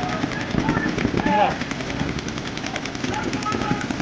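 Paintball markers firing in rapid strings of shots, a dense run of pops, with players shouting now and then.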